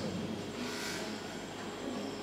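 Low, steady hiss and hum of a hall's amplified sound system, with the echo of a shouted phrase fading away at the start.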